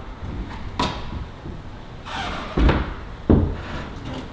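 Knocks and thuds of a climber's hands and climbing shoes landing on holds on an indoor bouldering wall: a sharp knock about a second in, then two heavier thuds in the second half.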